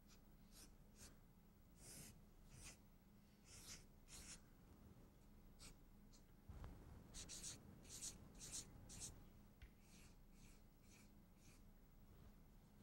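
Faint felt-tip marker strokes on flip-chart paper: short scratchy strokes coming in irregular bursts, busiest about seven to nine seconds in.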